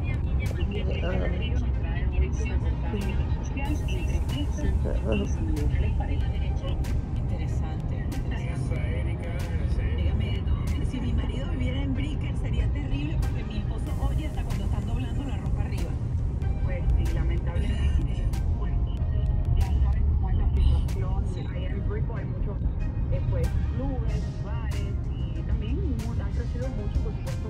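Steady low rumble of a car on the move, heard inside the cabin from the back seat, with scattered light clicks.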